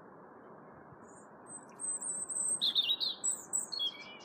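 Blue tits calling: high, thin, quick twittering notes that start faintly about a second in and grow louder through the second half.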